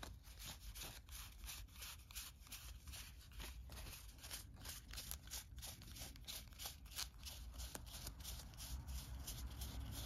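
Cardboard game cards being fanned out by hand through a thick deck: a quiet run of quick, irregular clicks and slides as the card edges flick past one another, several a second.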